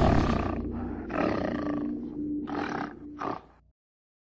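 Logo-sting sound effect: three animal roars, one after another, over a held tone and the fading tail of the preceding music. The sound cuts off about half a second before the end.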